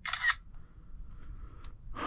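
A brief mechanical click and rattle lasting under half a second, then a faint steady hum.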